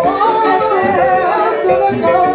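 Live band music with a singer's amplified voice singing lead over it, the sung line gliding and bending in pitch.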